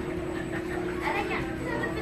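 People chattering, with children's voices among them, over a steady hum.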